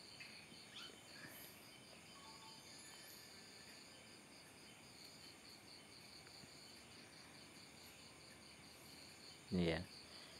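Crickets chirping faintly at night: a steady, rapid, evenly pulsing high trill that runs on without a break.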